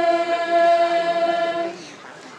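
Voices singing together without accompaniment, holding one long steady note that ends shortly before the end.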